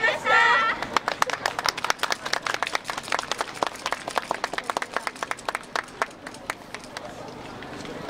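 Scattered hand clapping from a small outdoor audience, several claps a second, thinning out after about seven seconds. A few voices call out together briefly at the very start.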